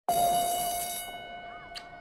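A single bell-like tone, struck once and slowly decaying; its bright upper ring fades after about a second, leaving a steady mid-pitched hum. A brief high chirp comes near the end.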